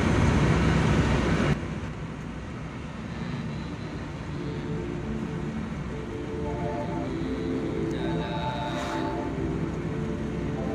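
Car interior noise of engine and tyres on the road, cut off suddenly about one and a half seconds in. Soft background music with held notes follows.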